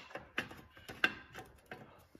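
Ratchet wrench clicking in short, uneven strokes, five or so sharp clicks with fainter ones between, as the bolts of a car's clutch pressure plate are turned at the flywheel.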